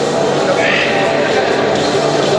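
People's voices over steady background sound, with one raised, drawn-out call near the middle.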